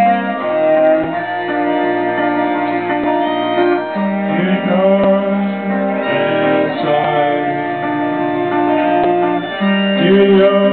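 Live folk band music: electric guitar with a cello holding long, steady notes.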